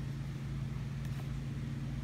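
A steady low hum, even in pitch and level, from a motor or appliance running in the background.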